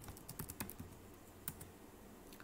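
Typing on a computer keyboard: a quick run of keystrokes in the first second, then a single keystroke about a second and a half in.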